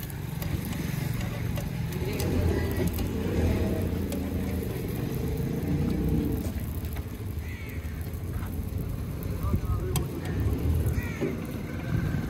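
Outdoor street ambience: people talking in the background over a steady low rumble, with a few light clicks.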